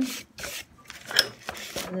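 Hand sanding on the wooden part of an old coffee grinder: a few short rasping strokes, with one sharp click a little over a second in.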